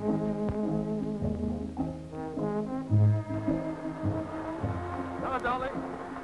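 Brass band music on an early-1930s film soundtrack: held notes and chords that change every half-second or so over a deep recurring bass note. A voice comes in near the end.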